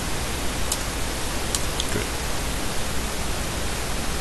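Steady hiss of background noise, with a few faint, sharp keyboard key clicks in the first two seconds.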